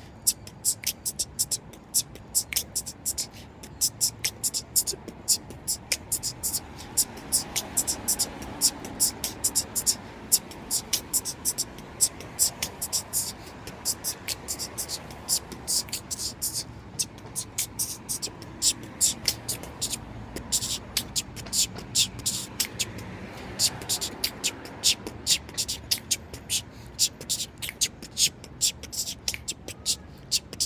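A man beatboxing: a steady run of sharp, hissy mouth clicks like a hi-hat and snare, about three a second, with a hummed tone underneath in places.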